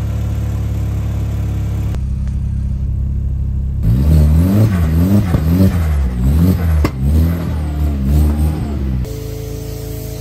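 Audi S3 replica's 1.8T turbocharged four-cylinder engine idling, then revved in a series of quick rises and falls from about four seconds in, with one sharp crack among the revs. Music takes over near the end.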